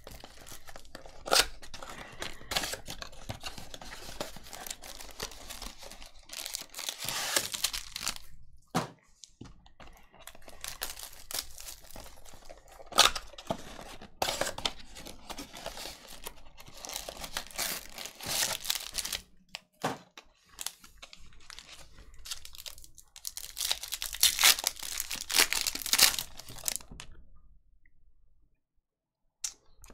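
Plastic shrink wrap being torn and crinkled off a Bowman's Best trading-card box, then the cardboard box being opened. The result is irregular rustling and crackling, with several louder bursts.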